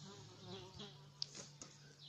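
Quiet room tone: a faint steady low hum, a faint wavering buzz in the first second, and a light click a little over a second in.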